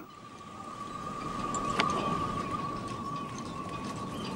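A single steady high tone held throughout, over faint rustling and scraping of cord being pulled across a corroded zinc plate, with one sharp click a little under two seconds in.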